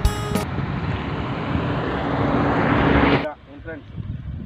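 Background music ends in the first half-second. An outdoor rushing noise then swells steadily for about three seconds and cuts off abruptly, and a faint voice follows.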